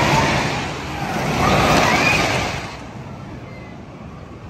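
Wooden roller coaster train running past on its track, a loud rumble with riders' shouts over it, dropping off sharply a little under three seconds in.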